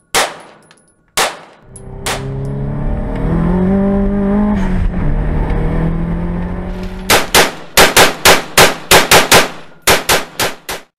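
Two single handgun shots, then a car engine running under way, its pitch rising and falling, then a rapid string of rifle shots at about three a second.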